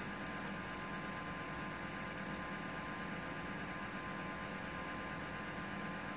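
Faint steady electrical hum and hiss with several thin steady tones, unchanging throughout: background room tone with no distinct event.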